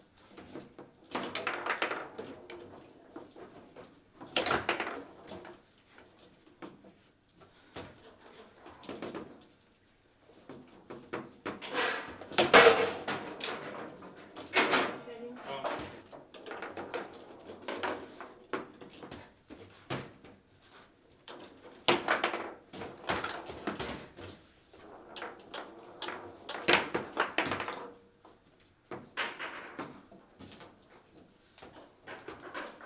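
Table football play: the ball being struck by the rod-mounted players and the rods rapping against the table in irregular clusters of sharp knocks and thuds, the loudest about twelve and a half seconds in.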